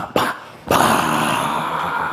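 A man's loud, rough vocal sound effect, a growl-like roar that starts just before the middle and holds for more than a second, voiced to go with an aggressive dance move.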